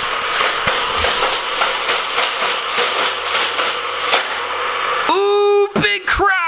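Hot Wheels Criss Cross Crash track running: its motorized boosters whir steadily while die-cast cars clatter and rattle through the plastic track and loops. About five seconds in, a high, drawn-out vocal cry rises over it and falls away.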